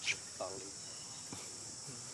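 Steady high-pitched drone of an insect chorus, unbroken throughout.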